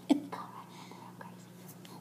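A girl's short vocal sound right at the start, then faint whispering, over a steady low hum.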